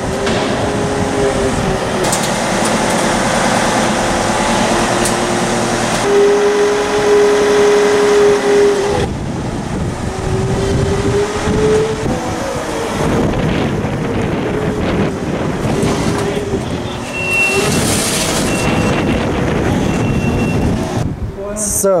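Jungheinrich forklift running, its engine and hydraulic note stepping up and down as it lifts a car off a trailer. It is loudest and highest for a few seconds in the middle, and three short high beeps sound near the end.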